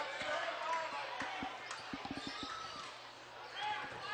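Basketball dribbled on a hardwood gym floor, a run of sharp bounces in the first couple of seconds, over the chatter of a gymnasium crowd.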